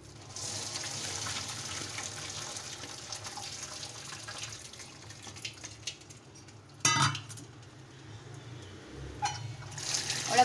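Hot pasta water poured from a bowl into a plastic colander in a sink, splashing and draining away. There is a short clatter about seven seconds in and a smaller knock near the end.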